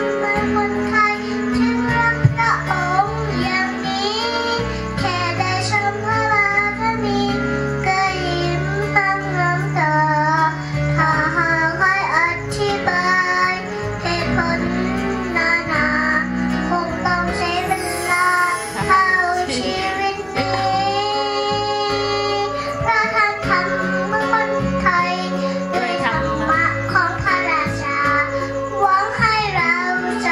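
A young girl singing into a handheld microphone over a backing music track, her melody held and sliding between notes above a steady bass line.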